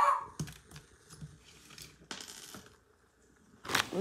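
Small objects being handled: a few light clicks and knocks, a short rustle about two seconds in, and a sharper knock near the end.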